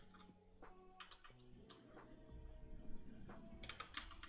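Faint computer keyboard clicks: a few scattered keystrokes, then a quick run of them near the end, over quiet background music with held notes.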